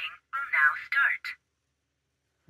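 A short recorded voice announcement from a Thinkware dash cam's small built-in speaker, thin and tinny, ending about a second and a half in.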